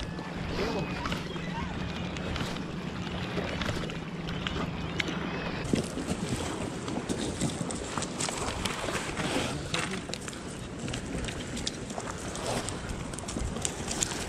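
Wind and water noise on a shoreline with a low steady hum, then, after a cut about six seconds in, a run of short clicks and knocks as salmon are handled on wet beach stones.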